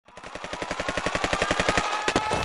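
Machine-gun fire, a rapid even clatter of about twelve shots a second, fading in from silence and growing louder.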